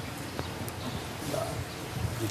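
A lull filled with low background noise and a couple of faint clicks about half a second in.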